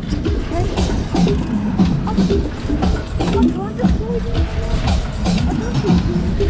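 Loud fairground ride music with a beat, over the rumble and rush of a fast-spinning fairground ride, with riders' voices and laughter mixed in.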